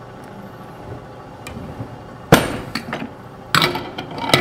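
Metal portafilter knocking against an E61 espresso group head as it is fitted under a freshly installed group gasket: one sharp clank about two seconds in, light clinks, and a second knock near the end.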